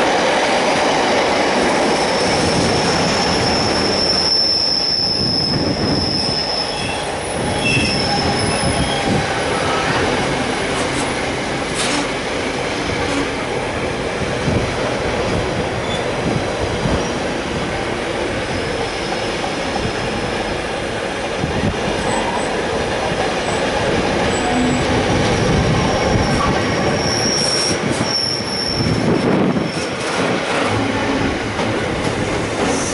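Intermodal freight train of container flat wagons rolling steadily past: a continuous rumble of wheels on rail with repeated clicks over rail joints. A thin, high wheel squeal comes and goes, strongest a few seconds in and again near the end.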